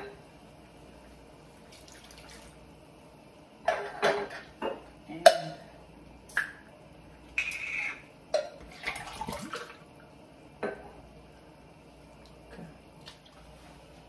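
Scattered clinks and knocks of a metal tin can, spoon and pot, the loudest about five seconds in, with a short pour of liquid, as a container is rinsed out into a stew pot.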